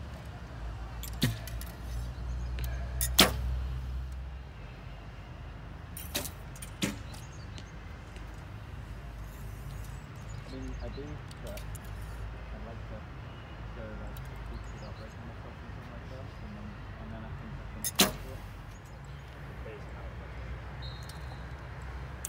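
Recurve bows being shot: sharp snaps of the string on release, the loudest about three seconds in and another near the eighteen-second mark, with a few quieter clicks between.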